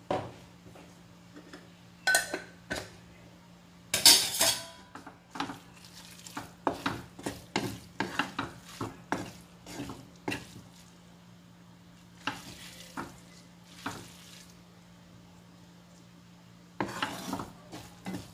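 Pasta being stirred and tossed in a pan: a utensil scrapes and clinks against the pan in irregular strokes, loudest about four seconds in, with quieter stretches in between. A faint steady hum underlies it.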